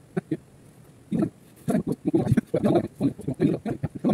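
A person's voice talking in short, quick syllable bursts, the words not made out, with a brief pause about half a second in.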